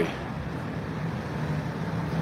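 City street traffic noise: a steady hum of vehicles passing, with a low engine drone coming in about two-thirds of the way through.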